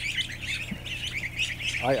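Hundreds of ducklings peeping at once: a dense, continuous chorus of overlapping high chirps, over a steady low hum.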